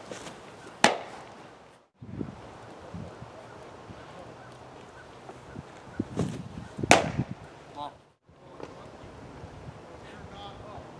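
Two baseball pitches smacking into a catcher's mitt: sharp pops about six seconds apart, the first about a second in.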